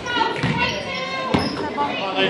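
A basketball dribbled on a hardwood gym floor, two sharp bounces about a second apart, under constant spectator voices.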